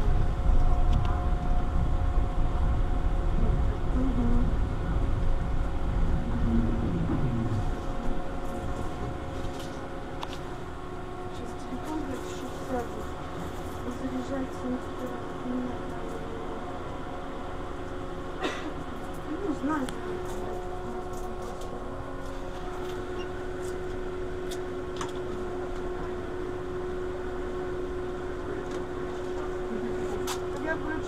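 Retro-style tram running, heard from inside behind the driver's cab: a low rumble for the first several seconds, then quieter, with a steady electrical hum of several tones. A faint voice now and then.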